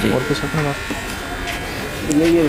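A voice speaking briefly in the first second, then a steady electrical buzz in the background.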